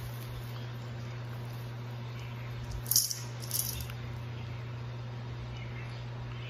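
Two brief, sharp lip smacks about three seconds in, half a second apart, as freshly applied lip gloss is pressed between the lips and tasted, over a steady low hum.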